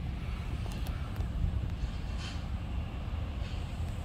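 Wind buffeting the microphone: a steady low rumble that flutters with the gusts.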